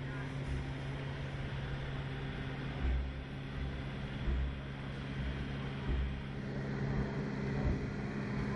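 A steady low machine hum holding a few pitched tones, with short low rumbles coming and going every second or so.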